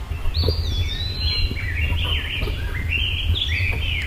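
A songbird singing a run of short, quickly repeated chirping notes, over a steady low rumble.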